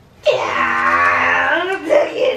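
A person's long, drawn-out excited cry, starting a moment in and held for over a second, then a shorter vocal sound near the end: a wordless reaction to a gift.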